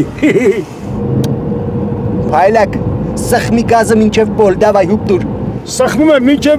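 A man laughing and talking inside a car's cabin, over the steady hum of the engine and road noise.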